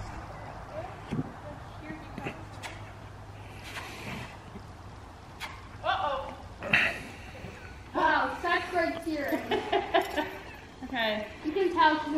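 Indistinct voices and laughter with no clear words, mostly in the second half; the first half is quiet apart from a few faint scattered knocks.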